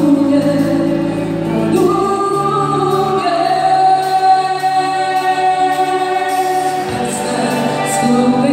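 Live pop-rock band playing a ballad with a woman singing long held notes over guitars and keyboards. The bass and low end drop out after about two seconds and come back near the end.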